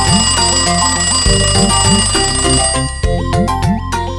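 A cartoon alarm clock's bells ringing over bouncy children's song music with a repeating bass line; the ringing stops about three seconds in and the music carries on.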